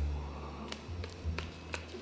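A few light clicks from the buttons of a handheld air-conditioner remote being pressed, over a low steady rumble.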